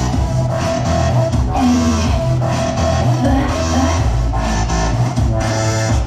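Upbeat electronic J-pop backing track played loud through outdoor PA speakers, with a strong bass beat, in an instrumental stretch without singing.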